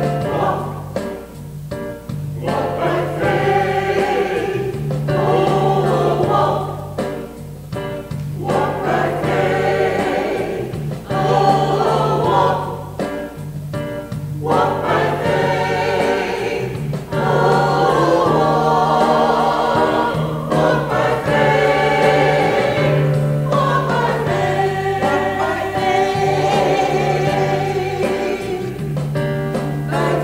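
Mixed church choir singing in parts, in sung phrases of a few seconds with brief breaths between them.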